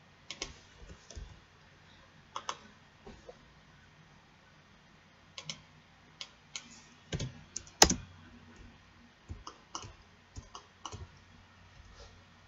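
Irregular clicks and taps of a computer keyboard and mouse, coming singly or in quick small clusters, the loudest about eight seconds in.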